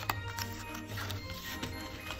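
Soft background music with a steady, even sound.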